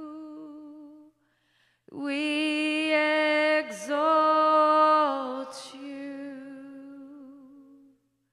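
A woman singing unaccompanied into a microphone, in long held notes with vibrato. A note fades out in the first second; after a short break she sings a long phrase that steps down in pitch and trails off softly near the end.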